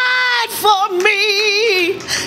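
A woman singing a gospel worship song solo into a microphone without words at this point: she holds one long note for about half a second, then sings a wavering run with wide vibrato that slides down in pitch near the end.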